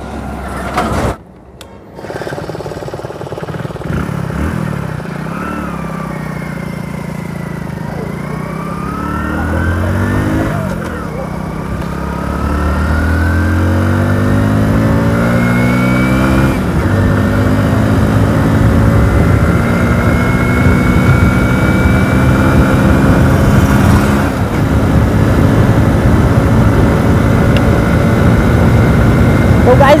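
Hero Splendor Plus BS6's small single-cylinder four-stroke engine accelerating hard with a pillion aboard, its pitch climbing in several rising sweeps as it goes up through the gears. It then holds a steady, higher pitch as the bike nears its top speed.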